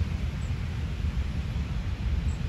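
Low, unsteady wind rumble on the microphone, with a faint hiss of open-air background above it.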